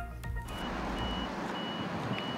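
A vehicle's reversing alarm beeping about twice a second with one high tone, over a steady rush of outdoor wind and traffic noise.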